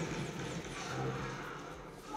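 Action-film sound effects, a dense rumbling crash-and-blast mix, playing through the built-in speakers of a Xiaomi TV5 55-inch TV. The sound fades over the last second as the TV volume is turned down.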